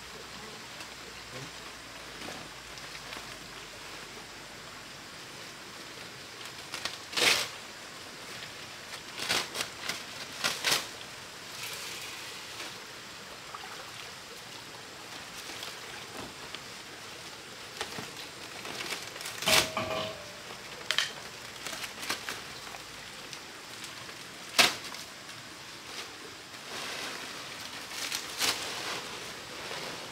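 Large palm fronds rustling and crackling as they are handled and laid on a thatched roof, with a handful of sharp knocks and cracks scattered through, over a steady outdoor hiss.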